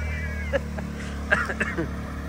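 Side-by-side UTV engine running with a steady low drone as the machine works through a mud hole, with short high-pitched voice sounds over it.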